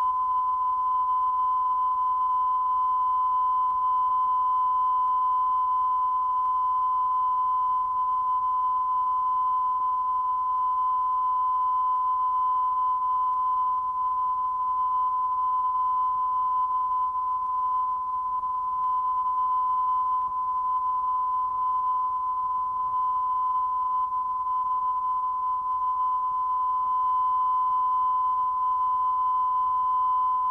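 Steady 1 kHz line-up test tone that accompanies colour bars: one unbroken pure beep at a constant level, with a faint low hum beneath it.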